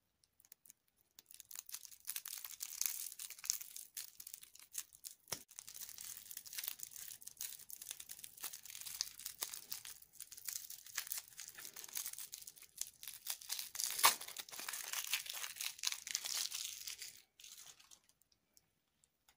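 Crinkly plastic candy wrapper being twisted and peeled off a small lollipop by hand: a dense run of crackles that starts about a second in and stops just before the end, with one sharper crack about three quarters of the way through.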